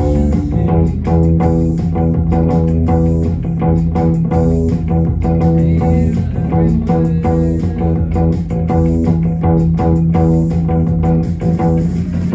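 Electric bass guitar played along with a full rock band recording: plucked bass notes over guitars and drums with a steady driving rhythm.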